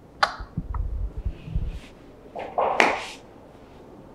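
Movement on a sofa: a sharp click near the start, low bumps and fabric rustling, then a short, loud, breathy hiss about three seconds in.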